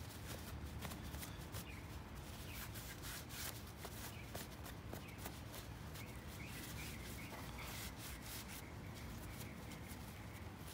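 Faint rubbing and crinkling of a paper towel wiping wet paint off a 3D-printed plastic blaster part, with many small scattered ticks.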